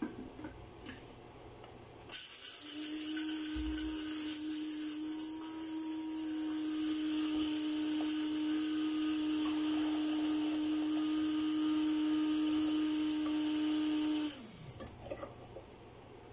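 A small electric motor of a kitchen appliance running steadily with a constant whine, starting suddenly about two seconds in and winding down with a falling pitch when it is switched off near the end.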